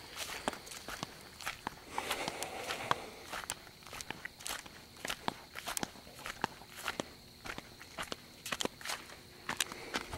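Footsteps of a person walking at an uneven pace, with a faint steady high tone underneath.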